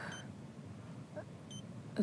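A hospital patient monitor beeping twice, short high beeps about a second and a half apart, over faint room hiss.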